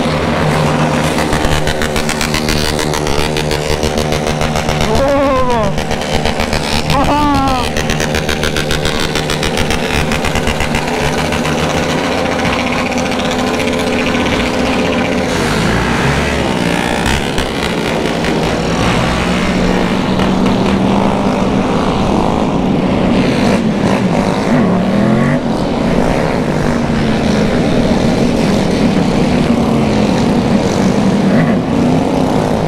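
Motorcycle engines in a slow-moving convoy, heard from one of the bikes: a steady engine note for about the first half, then uneven revving. Two short arched tones are heard about five and seven seconds in.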